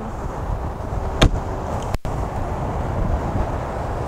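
Outdoor background noise with wind buffeting the microphone and a low rumble, broken by a single sharp knock about a second in and a brief dropout in the sound about two seconds in.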